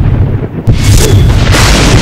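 Loud, bass-heavy promo soundtrack effects: a deep rumble pulsing about four times a second under swelling noisy booms. It drops briefly about half a second in and comes back with a sudden hit.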